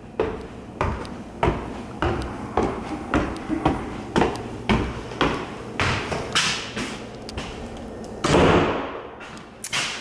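Footsteps on stairs, a steady run of thumps about two a second, with a longer, louder swish near the end.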